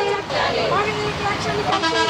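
A person's voice speaking, with a vehicle horn sounding briefly near the end.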